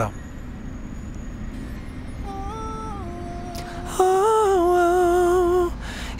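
A man's voice humming or singing a soft note about two seconds in, then a louder sustained falsetto note with a slight waver about four seconds in. A steady low background hum runs underneath.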